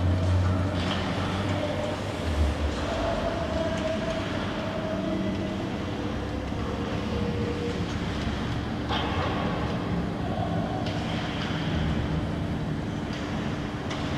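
Ice rink ambience during a hockey drill: a steady low rumble and hum filling the arena, with skate blades scraping and carving on the ice now and then, most clearly about nine seconds in.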